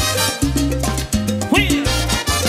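Colombian tropical dance band playing a Latin dance tune without vocals: a strong bass line changing notes in a steady rhythm under percussion, keyboard and trumpet, with a quick rising note near the end.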